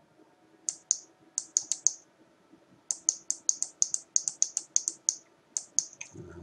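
Computer mouse button clicked repeatedly, sharp light clicks at first in pairs and small groups, then a quick run of about a dozen at roughly four a second, as a value is stepped up with an on-screen spinner arrow.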